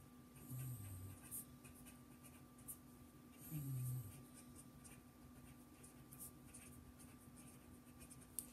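Very faint scratching of a pen writing, with two short low murmured hums of a voice, one about half a second in and one about three and a half seconds in, over a faint steady hum.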